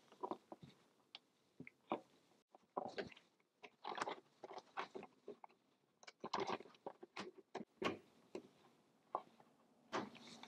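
Faint, irregular small metallic clicks and scrapes as needle-nose pliers grip and bend the legs of a split pin around the actuator pin of a brake master cylinder.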